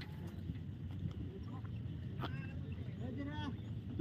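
Faint voices of people calling and talking at a distance, twice, over a steady low background noise.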